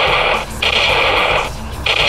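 Laser tag assault rifle's built-in speaker playing its simulated gunfire sound as it is fired, in three bursts of about a second each with short gaps between.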